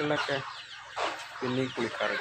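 Chickens clucking, with many short, high, falling chick peeps throughout and a low call about one and a half seconds in.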